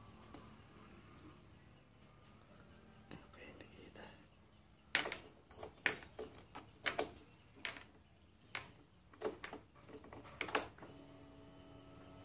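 Sharp clicks and knocks from the key and ignition switch of a Honda Beat scooter, about ten of them at irregular intervals, then near the end a steady hum that lasts about two seconds as the ignition is switched on and the dash lights up, ahead of starting.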